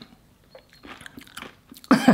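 Quiet chewing and crunching of blue Takis, rolled corn tortilla chips, in the mouth, a few small crunches spread through the pause. A voice breaks in near the end.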